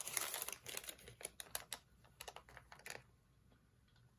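A paper store receipt rustling and crinkling as it is picked up and handled: a burst of rustle at the start, then a quick run of sharp light ticks and crackles for about three seconds before it settles.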